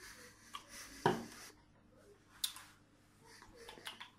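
Faint mouth sounds of a person tasting beer just after a sip: breathing, swallowing and small clicks of the mouth. There is a louder thud about a second in and a sharp click a little before the halfway point.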